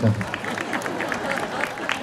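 Scattered audience applause: irregular handclaps, lighter than the speech around it.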